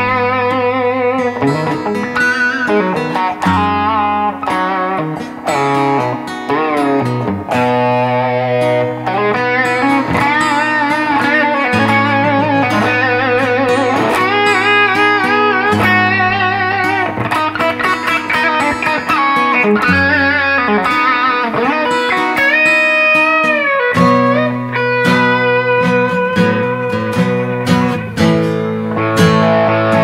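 An electric guitar and an acoustic guitar played together, jamming a riff in C sharp, with a bent note rising and falling about three quarters of the way through.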